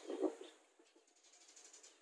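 Faint handling noise, light scraping and rustling, as a bottle is picked up and brought up close, with a short louder bit just after the start.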